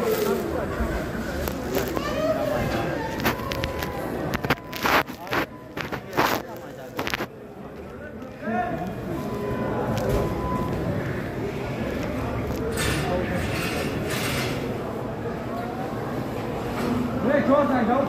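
Busy warehouse floor: indistinct voices over steady background noise, with a cluster of sharp knocks and clatters about halfway through.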